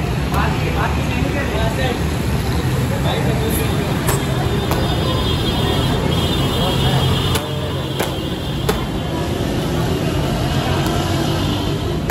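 Barefoot taekwondo kicks slapping a handheld kick paddle: several sharp smacks a few seconds apart, some in quick pairs, over a steady low hum and background voices.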